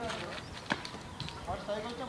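Fielders' voices calling across the ground, with one sharp knock under a second in, a cricket bat striking a leather ball.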